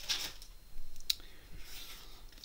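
Sheets of cardstock being handled and slid on a desk, with a short rustle at the start, another toward the end, and one light click about a second in.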